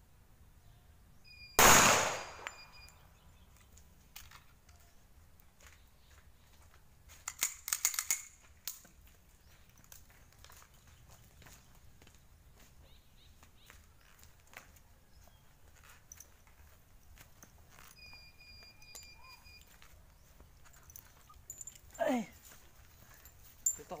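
A single shot from a Rock Island Armory 1911 pistol about two seconds in, a loud crack with a short echo trailing after it. Around eight seconds in comes a quicker cluster of fainter cracks and clicks, and near the end a brief voice.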